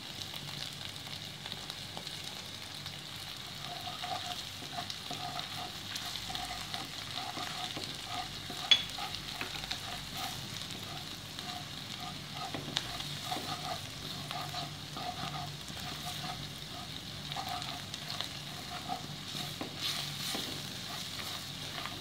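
Browned onions and curry leaves sizzling steadily in a wok, with a wooden spatula stirring and scraping through them. A single sharp tap comes just under nine seconds in.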